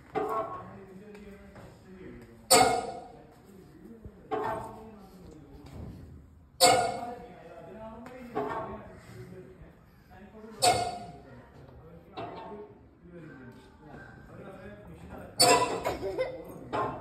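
Children's voices in short calls or shouts about every two seconds, each opening with a sharp clink or knock.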